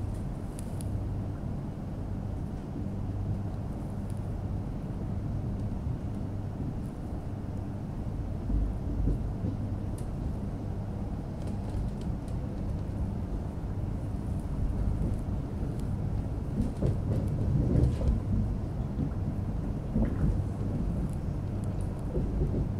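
Electric suburban train running, heard from on board: a steady low rumble with a constant electrical hum underneath.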